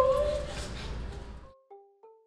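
A woman's whimpering cry trails off over the first second. The room sound then cuts out and a light tune of short, separate notes starts.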